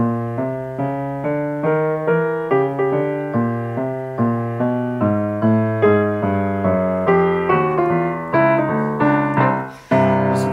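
A Yamaha G2 5'8" grand piano being played: a flowing passage of single notes and chords, a few notes a second. The sound dies away briefly near the end before a fresh loud note is struck.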